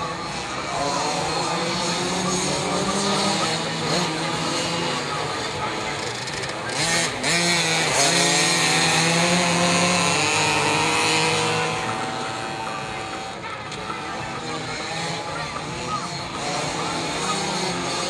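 Several small dirt-track motorcycles racing together, their engines revving up and down through the corners. The pack grows louder about seven seconds in as it passes close, then falls back.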